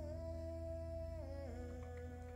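Soft background music: a held melodic note over sustained low tones, stepping down in pitch about one and a half seconds in.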